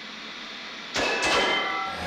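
Television static sound effect: a steady hiss of snow noise, then, about a second in, a much louder crackle of interference with faint steady tones running through it, like a set being tuned between channels.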